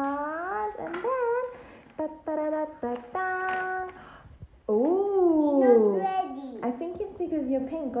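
A young child's voice babbling in a sing-song way, with wordless bending sounds, a few notes held steady around the middle, and a long falling call about five seconds in.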